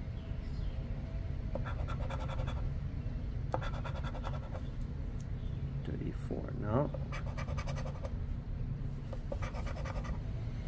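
A metal casino-chip-style scratcher coin scraping the coating off a scratch-off lottery ticket, in about four short bursts of rapid strokes.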